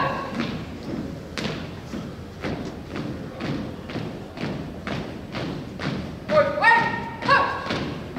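Drill team's shoes striking a wooden gym floor in unison, a steady marching cadence of about two steps a second. Near the end a commander shouts two drill commands.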